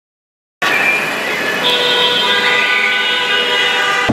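Vehicle horns sounding without a break, several held pitches overlapping, starting abruptly about half a second in.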